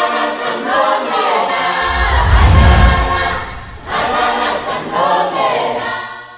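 Outro music of a choir singing, with a deep boom about two seconds in, fading out near the end.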